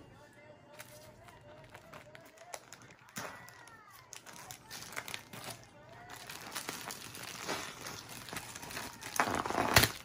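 Thin plastic bag crinkling and rustling as it is pulled and bunched off a rolled-up bedding bundle, getting busier in the second half with a loud rustle near the end. A child's short humming sound comes early on.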